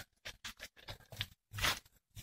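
A quick run of short, irregular crunches and scrapes, with a longer, louder rustle about one and a half seconds in.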